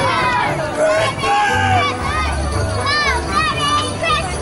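A song playing with a sung voice over a steady, stepping bass line, mixed with children shouting and playing.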